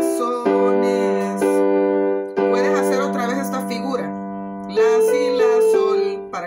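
Keyboard with a piano sound playing slow sustained chords, bass notes and chords struck together, with new chords at about half a second, a second and a half, two and a half seconds and nearly five seconds in: the E minor, C major and G major chords of a worship-song verse.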